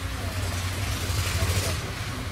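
Steady low outdoor background rumble with faint voices.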